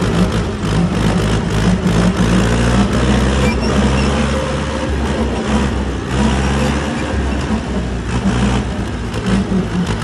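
Massey Ferguson 290 tractor's four-cylinder diesel engine running steadily at working speed while powering a PTO-driven grass topper.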